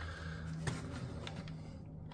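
Faint handling of wires and multimeter test leads, with one light click about a third of the way in, over a steady low hum.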